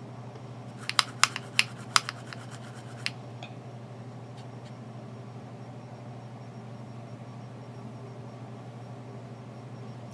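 Light, sharp clicks and taps from a makeup brush knocking against a plastic eyeshadow palette, about six in two seconds early in the stretch. Then only a steady low hum.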